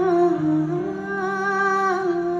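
A woman's wordless humming vocal line, amplified through a microphone, holding long notes that glide gently and step between pitches over a sustained instrumental accompaniment.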